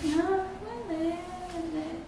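A woman's voice in a drawn-out, whiny sing-song, the notes held and sliding rather than spoken in short words.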